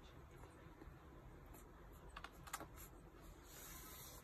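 Newborn puppies suckling at their mother: near silence with a brief cluster of faint clicks a little past halfway.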